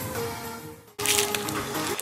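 Background music fading out, then after a sudden cut, about a second in, the crinkling and crackling of a protein bar's plastic wrapper being handled on a table.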